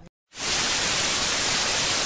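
Television static sound effect: a loud, steady hiss of white noise that comes in suddenly after a brief silence about a third of a second in.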